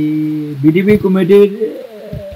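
A man's voice: a drawn-out hesitation sound held for about half a second, then a few quick spoken words.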